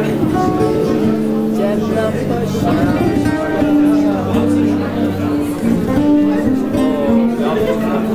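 Live band playing Black Sea (Karadeniz) music, loud and steady: drums, guitar and bass notes that change every second or so, under a wavering melody line.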